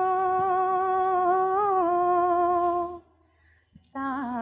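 A woman's voice holding one long sung note, with a slight dip in pitch near the end, that breaks off about three seconds in.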